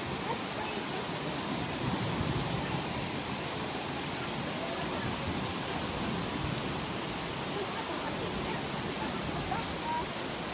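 Heavy rain pouring steadily on leaves and the ground, an even rushing hiss, mixed with the rush of a swollen, muddy mountain stream in flood.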